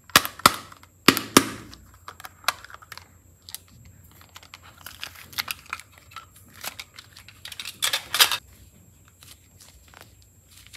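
A small plastic toy case snapped open at its latch, two loud sharp clicks about a second apart, followed by lighter plastic clicks and rustling as the clay inside is pried out and squeezed, with a longer dense crackling burst near the end.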